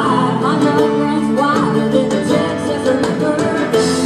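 Live band playing an instrumental stretch of a folk-rock song: acoustic guitars, keyboard, hand drums and electric bass, heard from the audience.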